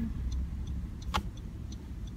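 Low steady rumble of a car heard from inside the cabin, with faint regular ticking about twice a second and a single sharp click about a second in.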